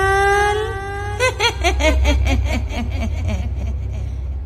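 An old woman's ghostly voice holds one long wailing note that rises slightly, then about a second in breaks into a rapid cackling laugh that sinks in pitch. A steady low rumble runs underneath.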